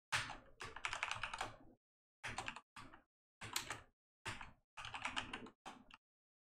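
Typing on a computer keyboard in about seven short runs of keystrokes, with brief pauses between them.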